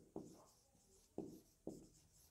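Faint strokes of a marker writing on a whiteboard: three short strokes, the first just after the start and two more over a second later.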